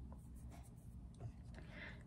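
Faint rubbing and a few light clicks from handling powder highlighter compacts.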